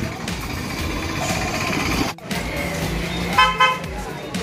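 Vehicle horn giving two short toots near the end, over a noisy street background that drops out briefly about two seconds in.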